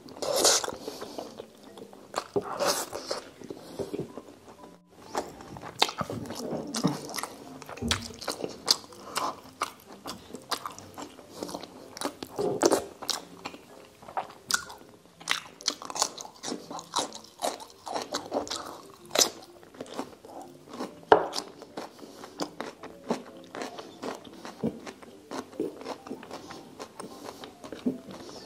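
Close-miked eating sounds: a person chewing and biting food with wet mouth sounds and frequent sharp, crunchy clicks, irregular throughout.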